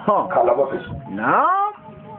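A man preaching into a microphone. His voice ends on a long, drawn-out "non" that swoops up and then down in pitch.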